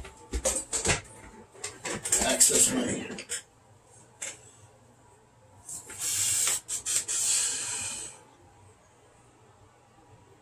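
Handling noise of a flexible cloth tape measure being unwound and straightened: scattered clicks and rustles, then two longer hissing rustles, about two seconds in and about six seconds in.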